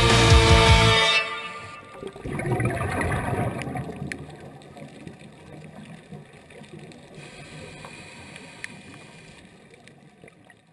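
Rock-style background music that cuts off about a second in, followed by underwater noise: a rushing wash that swells for a couple of seconds and then fades away.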